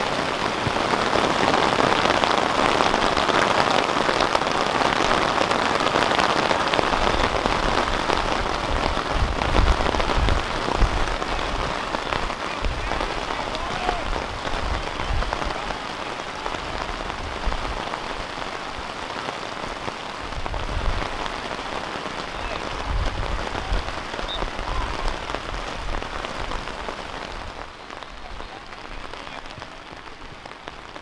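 Steady heavy rain falling, an even hiss that eases somewhat in the second half, with a few low rumbles along the way.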